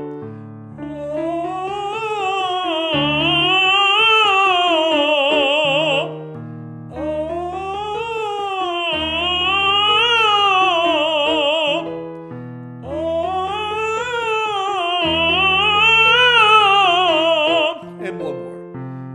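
A man's voice singing a five-note scale exercise up and down on a vowel with vibrato, three times, over piano accompaniment. He alternates between a soft, distant voce di lontano falsetto and full voice in the upper register.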